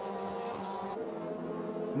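Formula Renault 2.0 single-seater race car engines running at high revs at a steady pitch, which steps lower about halfway through.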